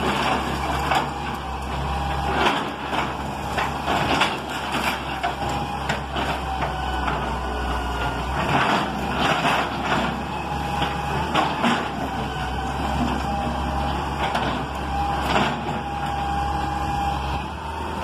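Hitachi EX200 hydraulic excavator's diesel engine running steadily as its bucket knocks down a brick and concrete house, with repeated crashes and clatters of falling masonry and rubble.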